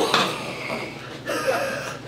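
A woman sighing, a long breathy exhale just after a chiropractic neck adjustment, with another breath about a second and a half in.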